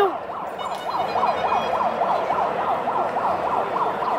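A siren on a fast yelp, its pitch sweeping up and down more than three times a second.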